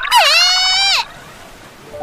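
A high-pitched female anime character's voice calls out in Japanese, one drawn-out cry of about a second that stops abruptly.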